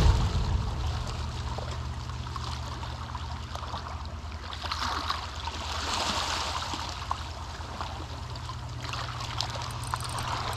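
Gentle water washing and trickling at the water's edge, swelling about halfway through, over a steady low hum.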